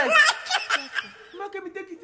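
A woman laughing briefly in the first second, then a woman speaking in a lower voice.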